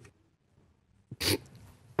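A single short burst of breath from one of the men about a second in: a scoffing snort of laughter.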